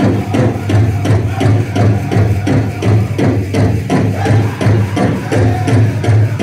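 Powwow drum group playing a jingle dress song: singing over a big drum struck in a steady, quick beat, with the metal cones on the dancers' jingle dresses rattling.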